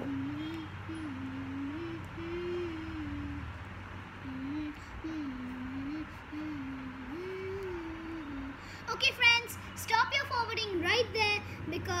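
A young girl humming a wandering tune to herself, then breaking into voice about nine seconds in.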